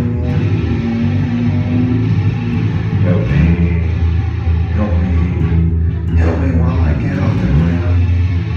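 Live band playing an instrumental passage of a rock song, with guitar and bass guitar, between sung lines.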